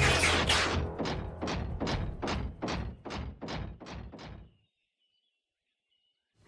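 Cartoon Transformers vehicle-to-robot transformation sound effect: a loud mechanical rush, then a run of about a dozen thuds, roughly three a second, each fainter than the last, ending about a second and a half before the end.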